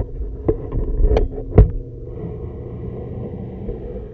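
Muffled underwater sound through an action camera's waterproof case submerged in a reef aquarium: a steady low hum and rumble, with three or four sharp knocks of the hand-held case in the first two seconds, the loudest about a second and a half in.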